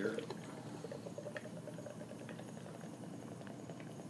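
A can of Guinness stout being poured into a pint glass: a faint, steady pour.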